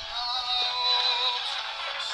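A song with singing playing from an FM radio broadcast through a mobile phone's small built-in speaker, thin and tinny with no bass.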